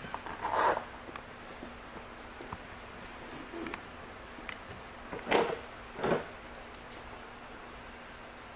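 Room tone with a steady low hum, a few faint clicks, and two short, louder noises about five and six seconds in.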